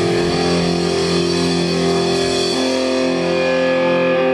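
Live rock band with distorted electric guitars and bass holding ringing chords, which change to a new chord about halfway through.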